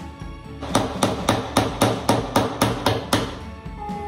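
A hammer driving a small nail into a wooden kit piece: about ten quick, even strikes at roughly four a second, starting just under a second in and stopping about three seconds in.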